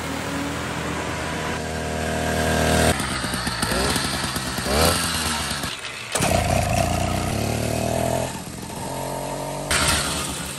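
Small two-stroke engine of a motorized chopper bicycle running under way as the bike is ridden past, its pitch rising and falling with the throttle. The sound changes abruptly a few times, at about three, six and eight seconds in.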